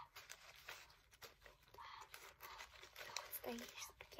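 Faint crinkling and rustling of cellophane wrap and paper butterflies on wooden skewers being handled, with small scattered clicks.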